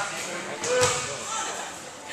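People's voices echoing in a gymnasium, with a single sharp thud a little under a second in.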